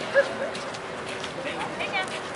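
Indistinct background chatter of several people talking, with two short, sharp, high sounds right at the start, about a fifth of a second apart.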